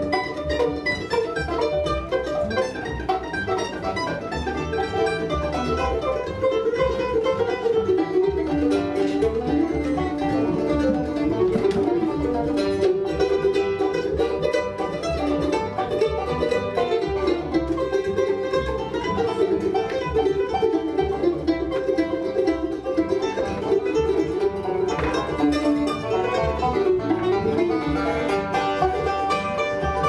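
Live bluegrass band playing an instrumental: banjo, mandolin and upright bass picking together without a break.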